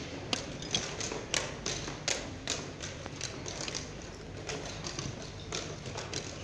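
Blitz chess being played: plastic pieces set down on the board and chess clock buttons pressed, a string of sharp taps and clicks about two a second over steady room noise.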